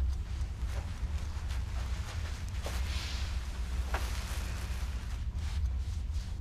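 Steady low rumble of a ship's engines heard inside a cabin, with a few faint soft clicks.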